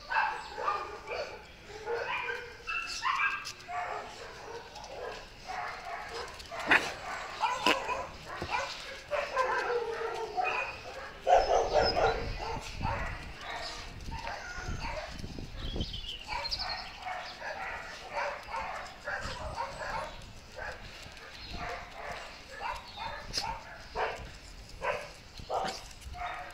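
Several small dogs barking in rough play, with many short calls scattered through the whole stretch.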